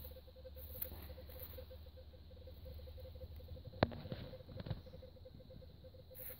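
Faint rustling of dry leaves and soil as a corroded 20 mm flak shell casing is lifted by a gloved hand, with a sharp click about four seconds in and a softer one shortly after.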